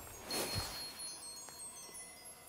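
Sound design of a TV bumper: a swoosh with a low thump about half a second in, then shimmering high chime tones that ring on.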